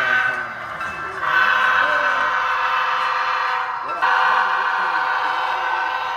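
Model train locomotive's horn sound, a chord of several steady tones blown in long blasts: one starts about a second in and another about four seconds in. People talk in the background.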